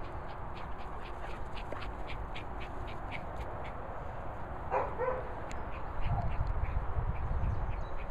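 Footsteps swishing through grass at about three a second, then a single short bark from a dog about five seconds in. A low wind rumble on the microphone follows near the end.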